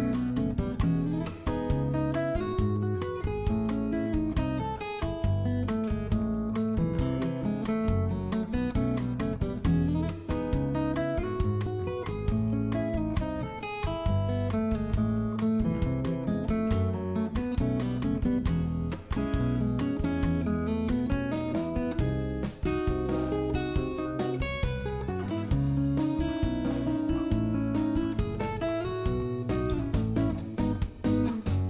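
Background music led by strummed acoustic guitar, with a steady beat and no breaks.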